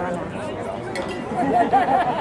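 Overlapping voices of people chattering at a football game, with one louder raised voice near the end. No clear words can be made out.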